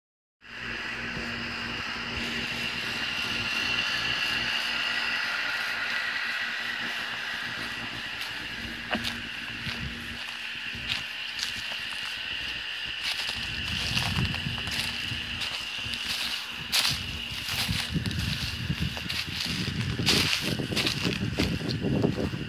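Outdoor ambience: a steady high-pitched drone, with scattered clicks and, in the second half, low bumps of handling noise on the microphone.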